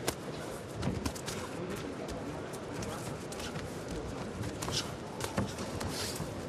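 Live boxing ringside sound: a steady arena crowd hum broken by a handful of sharp knocks from gloved punches and the fighters' footwork on the ring canvas. The loudest knocks come about a second in and again about five seconds in.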